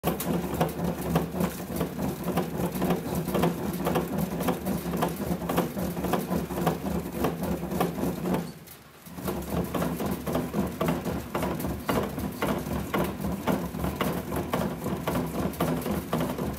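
Bat-rolling machine's rollers pressing the composite barrel of an Easton ADV 360 youth bat as it turns through them: a steady hum with dense crackling and clicking, the break-in of the barrel under roller pressure. The sound drops out briefly a little past halfway, then resumes.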